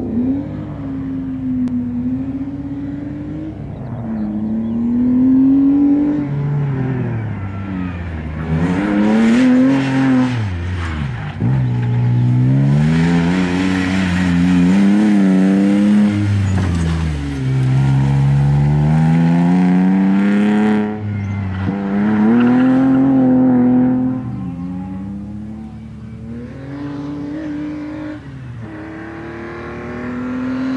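Opel Astra race car's engine revving hard, its pitch climbing and dropping over and over as it accelerates and lifts between the tyre-stack corners. It is loudest as the car passes close in the middle, then fades as it moves off down the course.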